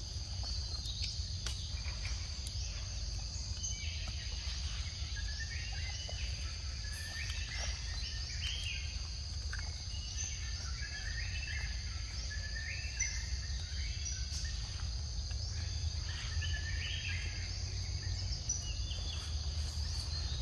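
Forest ambience: insects droning in two steady high tones, with short bird chirps scattered throughout over a low steady rumble.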